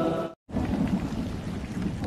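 Heavy rain pouring onto a flooded street, an even rushing hiss with a low rumble underneath. The sound cuts out completely for a split second shortly after the start.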